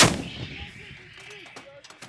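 M777A2 155 mm towed howitzer firing a single round: one sharp blast right at the start, its rumble and echo dying away over the next second and a half.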